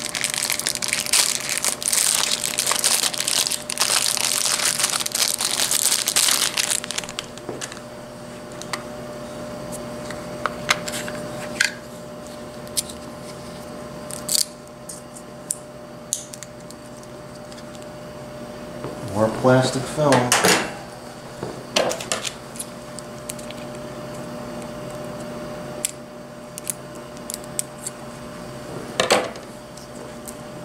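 Plastic packaging crinkling for the first several seconds as a remote control and its batteries are unwrapped, then scattered small clicks and taps of the batteries being handled and fitted into the remote.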